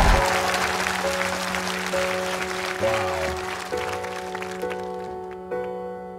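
Audience applause dying away as a slow piano introduction begins: single notes about once a second over a held low note.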